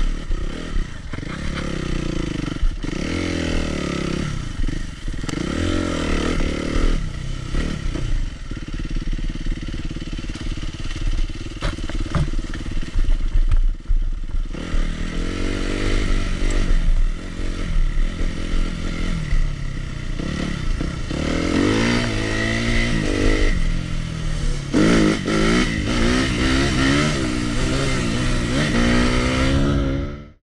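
Suzuki RM-Z250's four-stroke single-cylinder engine revving up and down over and over under throttle, with a steadier stretch of even engine speed about midway and rising revs again near the end.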